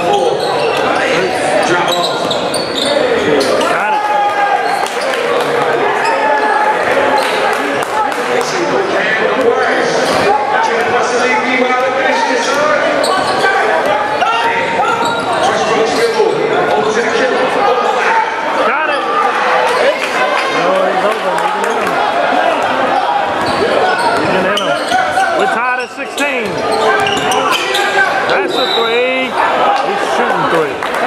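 Basketball game in a large gym: a ball bouncing on the hardwood court among many short knocks, with voices of players and spectators throughout, echoing in the hall.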